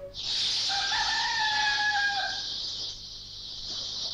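Rooster crowing once: a single long call about a second and a half long that drops in pitch at the end, over a steady high-pitched hiss.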